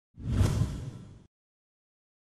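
A whoosh sound effect that swells quickly, fades over about a second, then cuts off abruptly.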